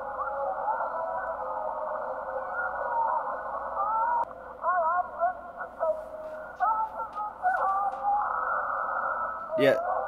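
Film soundtrack played back thin and narrow-band, like through a small radio: a man choking and grunting, a line of spoken dialogue, and wavering pitched cries.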